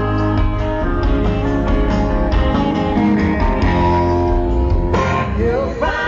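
Live amplified band music, loud and steady with a heavy bass, heard from within the audience.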